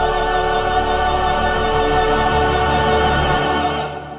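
Operatic soprano and tenor soloists with a choir hold one long, loud chord with vibrato over a deep instrumental bass. The chord is cut off just before the end and rings away.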